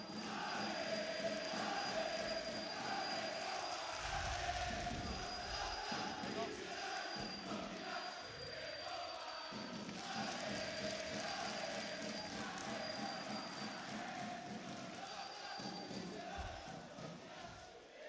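A crowd of football supporters chanting together in unison, a sustained massed-voice chant. A thin high tone comes and goes above it.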